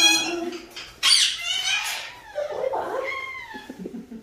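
Pet parrots calling: a high squawk at the start, a louder harsh screech about a second in that lasts about a second, then a few falling calls near the end.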